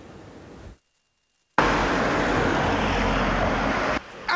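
Faint room hiss, a moment of dead silence, then street traffic noise that starts suddenly about a second and a half in and stays loud and steady, with a low rumble under it.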